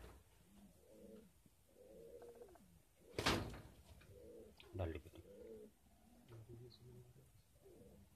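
Domestic pigeons cooing over and over, a low rolling call. A sharp knock, the loudest sound, comes a little after three seconds in, with a dull thump near five seconds.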